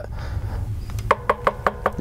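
Fingers tapping on a solid-body electric guitar while notes are held, bringing out the instrument's resonances: a quick run of about seven knocks in a second, starting about a second in, with faint ringing between them.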